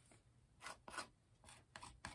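Faint, short scrapes of the back of a palette knife dragged across a canvas textured with molding paste, spreading white acrylic paint; a few separate strokes.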